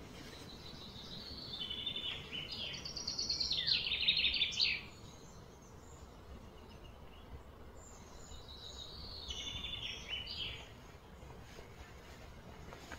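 A small bird singing two phrases of quick, high trilled notes, the first longer and louder, about a second in, the second near the end, over a steady outdoor background hum.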